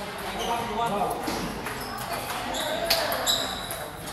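Indistinct chatter of several people in a large, echoing hall, with a few sharp clicks of table tennis balls bouncing, the loudest about three seconds in.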